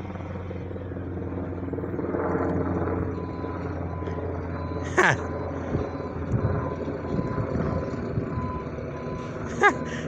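Recycling truck's engine running in the distance, with its reversing alarm beeping in the second half. A brief high falling sound cuts in about halfway through.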